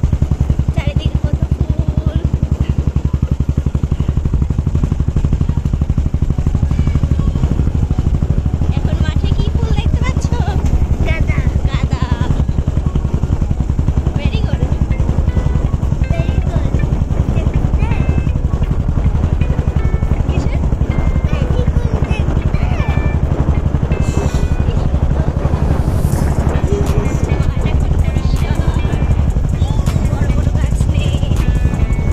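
A small vehicle's engine running steadily as it travels along a road, with music and voices mixed over it.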